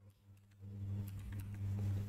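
A few soft computer-keyboard keystrokes over a low steady hum that comes in about half a second in.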